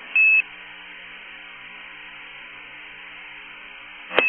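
A single short, high-pitched beep on a space-to-ground radio channel, about a quarter second long just after the start. It is followed by the steady faint hiss of the open channel with a low hum.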